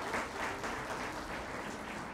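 Audience applauding, the clapping held at an even level.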